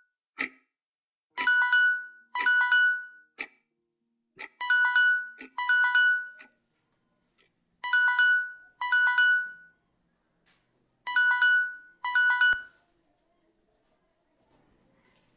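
Basic keypad mobile phone sounding its alarm tone: pairs of electronic two-tone beeps, a pair about every three seconds, with sharp single ticks between the pairs. The beeping stops a little before the end, just after a low thump.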